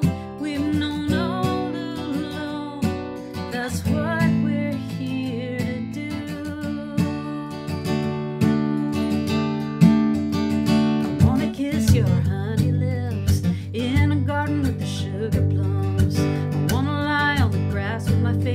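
Steel-string acoustic guitar strummed and picked, with a solo voice singing a folk-style song over it.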